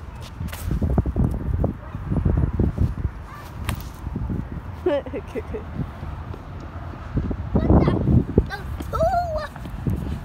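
Low, irregular rumbling on a phone microphone, typical of wind gusts, with a few sharp clicks and scuffs. Short bursts of a child's voice come about halfway through and again near the end.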